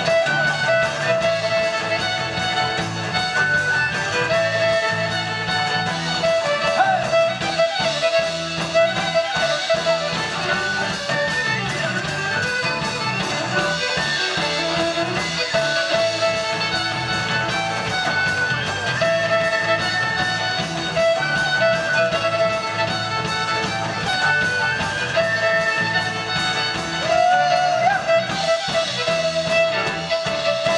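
Celtic band playing an instrumental passage: a fiddle carries the tune in long, wavering bowed notes over banjo and electric bass.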